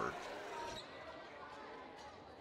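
Faint gym ambience during a break in play: a low murmur of distant crowd voices in a large hall.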